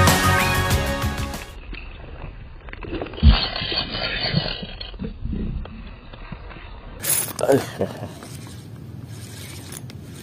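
Background music ends about a second and a half in. A Versus Carbotech 2000 spinning reel is then cranked to retrieve a lure, its gears ticking, with one sharp thump about three seconds in.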